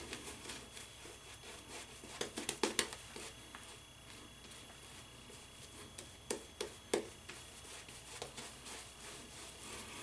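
Shaving brush working soap lather over about six days of beard stubble in circular swirls: faint scratchy rubbing, with a cluster of louder strokes a couple of seconds in and a few more about two-thirds of the way through.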